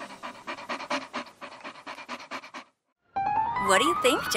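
Quick rhythmic panting, about seven breaths a second, that fades and stops about two and a half seconds in. After a short gap, a high voice with sliding pitch starts near the end.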